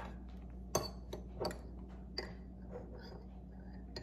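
A few light clicks and clinks of a metal spoon on glass, one with a brief glassy ring about two seconds in, as chopped garlic is scooped up.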